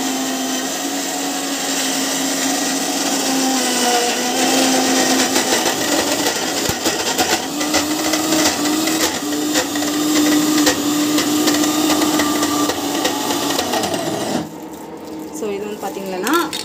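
Indian mixer grinder (mixie) running with liquid churning in its jar: a steady whirring hum that steps up slightly in pitch about halfway through, then cuts off about a second and a half before the end.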